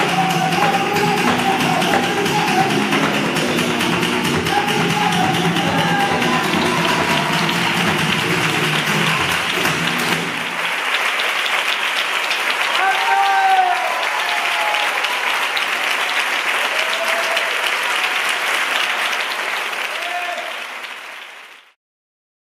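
Closing bars of a live flamenco piece, with singing, hand-clapping and guitar. After about ten seconds the music stops and audience applause takes over, with a few shouts of cheering. The sound fades out near the end.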